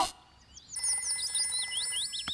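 Cartoon telephone ringing with a repeating high trill, starting about two thirds of a second in after a brief near-quiet at the scene change.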